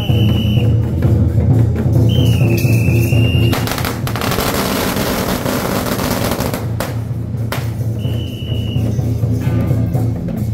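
A string of firecrackers crackling rapidly for about four seconds, starting about three and a half seconds in, set off under a deity palanquin. Procession music runs underneath, with a short high steady tone sounding before and after the crackle.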